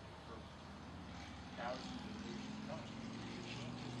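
A man talking over the steady low drone of a motor vehicle's engine, which grows louder in the second half.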